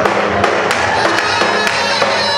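Live band playing Turkish halay dance music, with a melody over sharp, punchy drum strikes.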